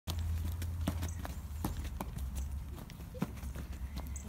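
Running footsteps on a concrete sidewalk: an even patter of sharp steps, about three a second, over a steady low rumble.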